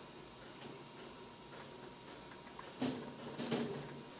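Faint clicks of a small tactile push button pressed repeatedly on a DC boost converter module, against a thin steady whine. About three seconds in, a brief low voice sound.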